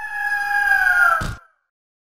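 A single long, clear animal-like call, used as a logo sound effect, sliding slowly down in pitch and cut off sharply after about a second and a half.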